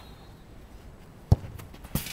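A football kicked hard in a set-piece shot: one sharp thud about a second and a quarter in, then a fainter knock near the end as the ball reaches the goal.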